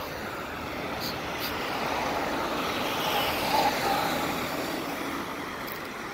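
Road traffic: a car going by, its tyre and engine noise swelling around the middle and fading again toward the end.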